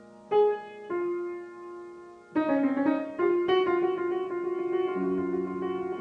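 Grand piano played in a solo improvisation: two chords struck and left to ring out, then from about two seconds in a busier flurry of notes that settles into held, sustained chords with new bass notes entering near the end.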